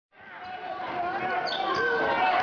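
Basketball gym ambience fading in: a ball bouncing, a hubbub of voices and a couple of short high squeaks.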